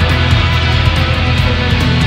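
Rock band playing live: electric guitar, bass and drums in an instrumental passage, with a steady cymbal beat over a heavy low end.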